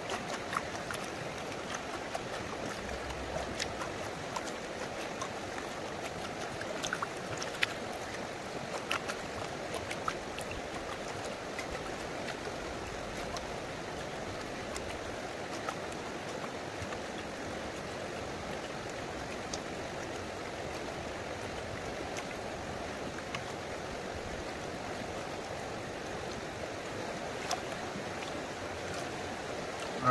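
Steady rush of flowing river water, with faint trickling and a few light ticks as a plastic gold pan is tilted in the current and water and gravel wash off its lip.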